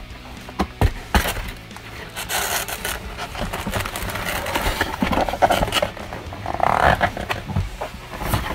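A cardboard Lego box being handled and opened on a table: a few knocks early in the handling, then the lid scraping and sliding off the box with rustling.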